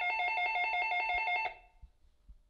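Electronic doorbell trilling: a rapid, evenly repeated two-note chime that cuts off suddenly about one and a half seconds in.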